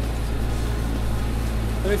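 Steady low drone of a Massey Ferguson 6480 tractor running at low revs while driving a hedgecutter, heard inside the closed cab.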